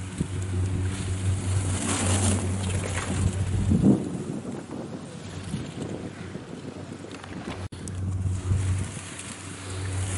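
Wind buffeting the camera microphone in blowing snow, over a steady low machine hum that fades in the middle and returns near the end.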